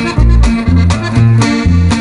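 Norteño band playing an instrumental passage: accordion over bass and guitar, with the bass and chords alternating in a steady two-beat rhythm.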